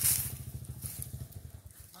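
Small motorcycle engine running nearby with a rapid, low, even putter that fades away near the end. A brief rustle comes right at the start.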